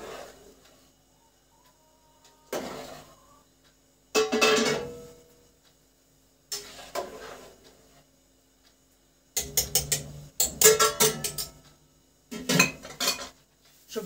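Metal utensils clanking and scraping against a large stainless-steel pot, in several separate bursts with a run of quick knocks near the end.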